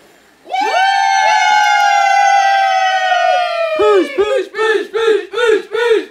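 A few people cheering with one long drawn-out call as the birthday candles go out. Nearly four seconds in it turns into a rhythmic chant of short repeated shouts, about two a second.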